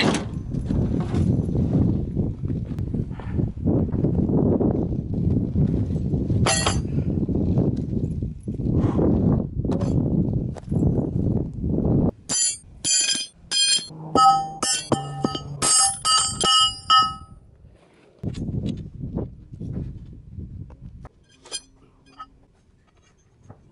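Rough scuffing and rustling for about twelve seconds, then a quick run of sharp metal clanks, roughly three a second for about five seconds, each ringing with a bell-like tone as steel plate-rack parts and conduit knock together during setup.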